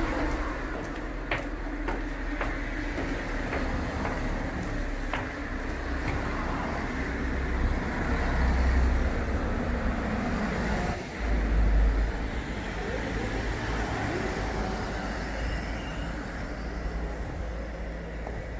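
Street traffic: cars driving past at low speed, with steady engine and tyre noise and a deep rumble. It swells louder twice about halfway through as vehicles pass close.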